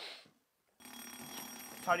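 Game-show sound effect: a steady electronic ringing tone that starts about a second in and holds unchanged as an emoji question comes up, with a contestant starting to answer near the end.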